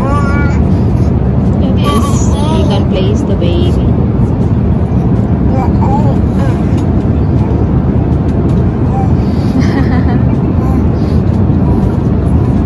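Steady, loud roar of an airliner cabin in flight. Over it, a baby makes a few brief, high-pitched babbling sounds.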